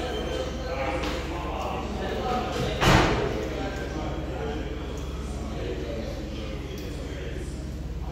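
People talking, with one sharp, loud thump just under three seconds in.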